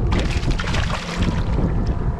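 Hooked speckled trout (spotted seatrout) thrashing and splashing at the water's surface beside the boat: a dense spatter of splashes for the first second and a half. Wind rumbles on the microphone throughout.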